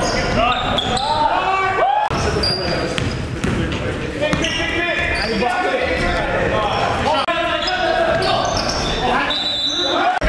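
Basketball game sound in an echoing gym: sneakers squeaking on the hardwood floor, the ball bouncing, and players' voices.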